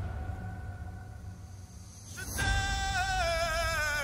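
Live male solo vocal from a ballad performance: a held note fades over a low rumble in a quieter stretch, then the voice comes back strongly with vibrato a little over two seconds in.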